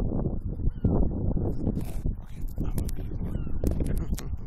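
Wind buffeting the microphone in an irregular low rumble, with scattered clicks and knocks of the camera being handled and set in place.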